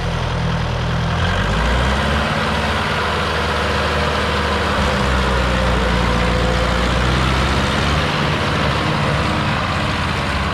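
Mahindra 595 DI tractor's diesel engine running steadily, its speed shifting a little now and then.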